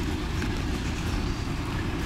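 Flatbed tow truck's engine running as it pulls away, a steady low rumble.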